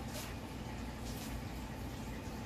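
Steady low background hum of a room, with a couple of faint soft rustles or shuffles.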